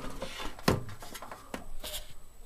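Handling noise of electronic equipment and cables being moved by hand: rubbing and scraping, with a sharp knock a little over half a second in and two lighter clicks near the end.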